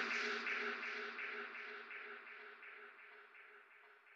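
An electronic music track's closing sound fading out: a buzzing noise pulsing about three to four times a second over a low held tone, dying away steadily.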